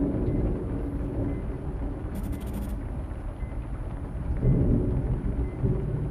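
Low, rumbling horror-film ambience with a dark droning rumble throughout, swelling about four and a half seconds in.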